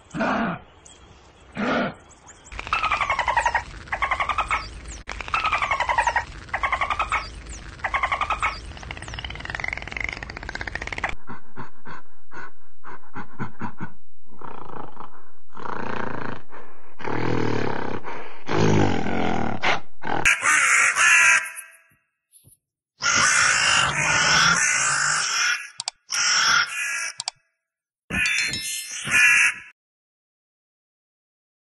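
A string of animal grunts and calls in short repeated bursts. The character changes several times, ending in shrill, noisy bursts.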